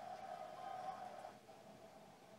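Quiet room tone with a faint steady hum, which drops away about two-thirds of the way through.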